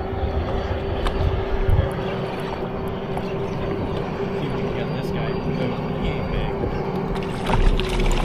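Wind and water noise around a bass boat, with a steady hum throughout. Near the end a louder rush comes as a hooked bass splashes at the surface beside the boat.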